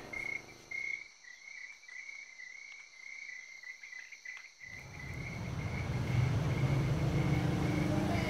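Crickets chirping steadily in a high, pulsing trill. About halfway through, a low hum comes up under it and grows louder.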